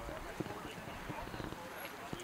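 Faint outdoor background in a pause between speakers: distant, indistinct voices with a few light clicks and knocks.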